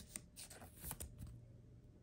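Faint, light rustles and a few small ticks of a Pokémon trading card being slid into a clear plastic card sleeve.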